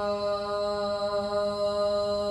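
A man singing unaccompanied, holding one long note at a steady pitch.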